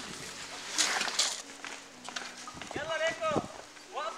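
People's voices outdoors: a short utterance near the start, two brief hissing noises about a second in, then a drawn-out voiced call with a wavering pitch about three seconds in.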